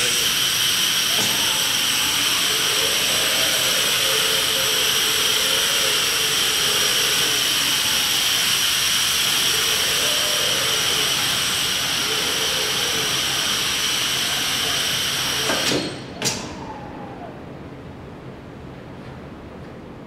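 Vacuum generator of a box-gripping vacuum lifter running while it holds a box: a loud, steady hiss with a high whine. It cuts off abruptly about 16 seconds in, followed by a single click as the box is released.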